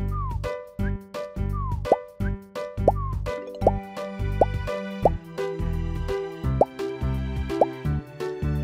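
Cartoon plop sound effects, a run of short pitched bloops about once a second, over bouncy children's music with a steady pulsing bass.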